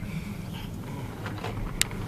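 Low, steady road and tyre rumble inside the cabin of a moving 2020 Tesla Model S, an electric car with no engine note. A single sharp click near the end.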